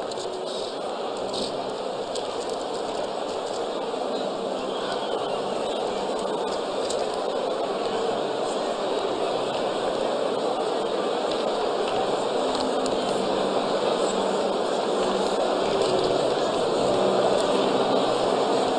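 A large congregation praying aloud all at once: a dense babble of many voices, no single one standing out, growing gradually louder.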